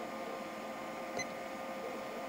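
A single push-button click on a Kill A Watt P3 electricity meter about a second in, as it switches its display from amps to watts, over a steady faint electrical hum.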